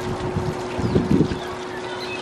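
Wind buffeting the microphone in low rumbling gusts, strongest about a second in, over a steady low hum and outdoor background noise.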